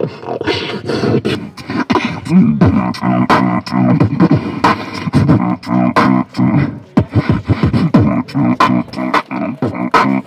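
Beatboxing into a handheld microphone cupped at the mouth: a steady beat of sharp mouth-made kicks and snares over a hummed bass line that bends in pitch.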